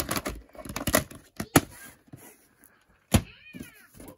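Plastic VHS clamshell case and cassette being handled and opened: a run of sharp clicks and knocks, the loudest about one and a half and three seconds in. Just after three seconds comes a short high call that rises and falls.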